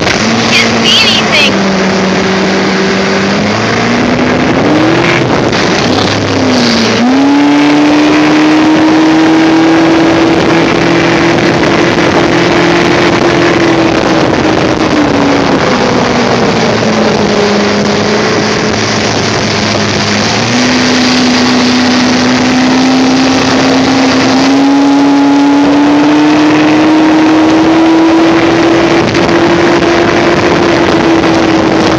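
Evinrude 90 hp two-stroke V4 outboard running the boat at speed, over the rush of wake water and wind. Its pitch climbs a few seconds in and holds. It sags in the middle as the throttle eases off, then climbs steadily again toward the end.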